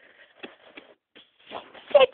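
Close, irregular rustling and scuffling of a cat's fur against the microphone as the cat grapples and bunny-kicks with his hind legs.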